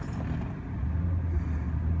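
Vehicle engine running at low speed as the vehicle is manoeuvred slowly, a steady low hum that grows louder about a second in.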